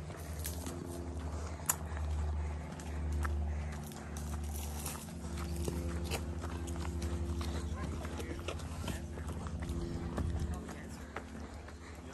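Footsteps of a walker on a dry dirt trail at a steady pace, short scuffing strikes one after another, over a low rumble throughout.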